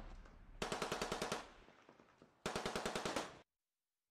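Two bursts of rapid automatic machine-gun fire, each a little under a second long, about a second apart.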